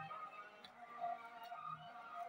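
Faint background music in a quiet room.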